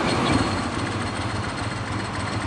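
Ducati 916's 90-degree L-twin engine idling with a steady, rapid pulsing beat, overlaid by the rattle of its dry clutch.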